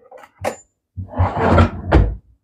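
Kitchen drawer under the counter being opened and rummaged through for a knife: a sharp click about half a second in, then about a second of rattling and sliding, ending in a knock as the drawer is pushed shut.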